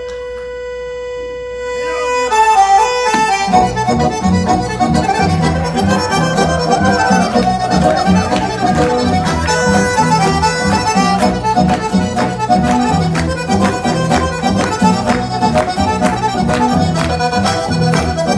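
Milonga-style tango music led by a bandoneon. It opens on a held chord, runs down through a falling line of notes about two to three seconds in, then settles into a brisk, steady beat.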